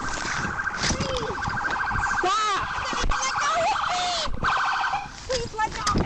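A woman's distressed cries during a physical struggle, over a loud, rapidly pulsing electronic buzz that cuts off about four and a half seconds in.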